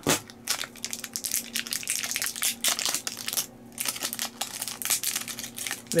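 Clear plastic wrapping around a pack of AA batteries crinkling and crackling as it is torn and pried open by hand. It makes a quick run of crackles with a brief pause about three and a half seconds in.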